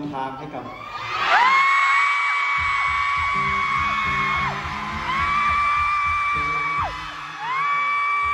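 High-pitched screaming from audience members: three long held shrieks, each rising at the start and dropping away at the end, over music with a regular beat.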